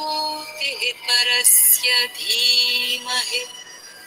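A single voice chanting a devotional mantra in a slow sung melody, with long held notes, small slides in pitch and sharp hissing 's' sounds.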